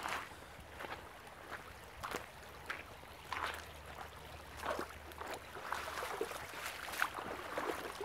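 Footsteps crunching on creek-bed gravel at an irregular walking pace, over the faint sound of a shallow creek running.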